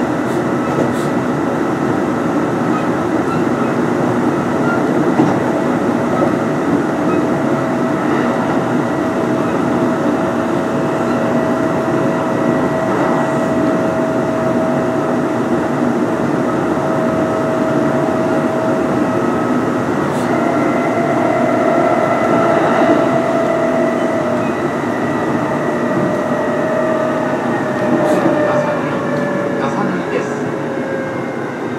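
Kintetsu 8800 series electric train under way, heard on board: steady whine from its field-phase-controlled DC traction motors and gearing over the rumble of wheels on rail. Near the end the whine falls in pitch as the train slows for the next station.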